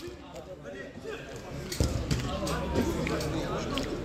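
A football kicked on an artificial-turf pitch: one sharp thump a little before halfway, among players' faint shouts.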